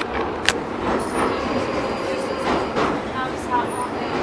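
Running noise inside a subway train carriage: a steady rumble and rattle, with a sharp click about half a second in and two brief high squeals.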